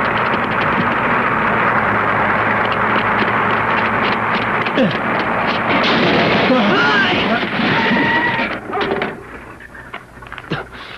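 Dense, loud rattling noise of an old open touring car driving fast, with a few short gliding tones over it; it drops away about nine seconds in, followed by a few light knocks.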